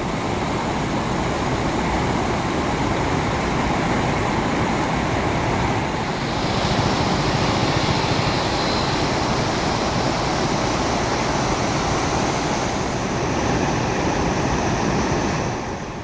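Floodwater of a swollen river rushing over a low causeway weir and churning around rocks: a loud, steady rush of water. The hiss brightens a little about six seconds in.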